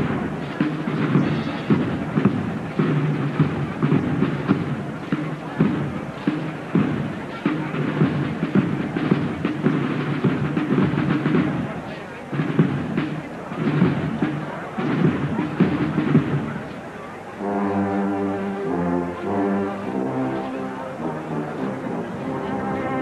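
Holy Week procession band playing in the street over a dense crowd: drums and brass mixed with crowd noise, then, about seventeen seconds in, a clear brass melody of held notes stepping from one to the next.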